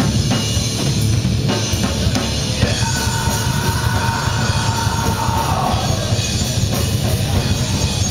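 Rock band playing live: a drum kit and electric guitars in an instrumental passage. A long held note rides over the top from about three seconds in, bending downward and fading near six seconds.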